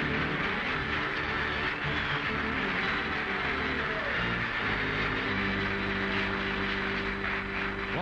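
Studio audience applauding over the band's theme music. The music settles on a held chord about five seconds in.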